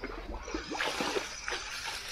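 Water splashing and sloshing in a shallow stream, in a busy run of splashes from about half a second in to near the end.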